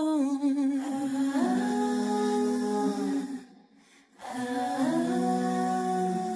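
Wordless hummed vocal harmony: layered voices hold long, steady notes, break off briefly about three and a half seconds in, then hold another chord.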